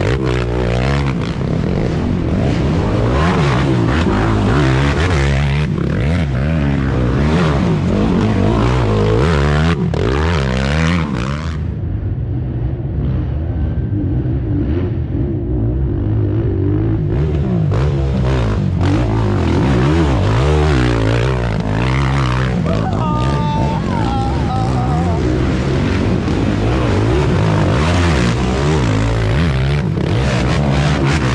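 Racing ATV engines revving up and down as quads pull through the course one after another, with a short lull in the middle.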